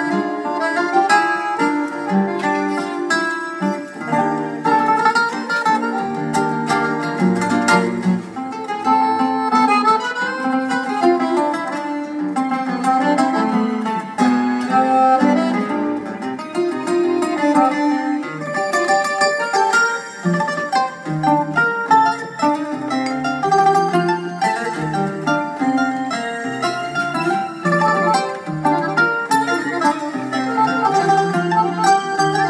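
Live acoustic guitar music: a fast instrumental piece of rapid picked melody notes over plucked chords, playing continuously.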